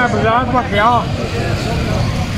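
Street traffic: motorcycle engines running past make a steady low rumble. A man's speech is heard over it for about the first second.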